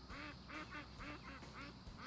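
Domestic ducks quacking: a run of short quacks, about two a second, fairly faint.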